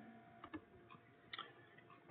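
Near silence: room tone, with a couple of faint ticks about half a second and a second and a half in.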